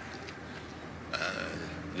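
Steady low hum and hiss of an old outdoor recording, with a faint rush of noise coming in a little past halfway.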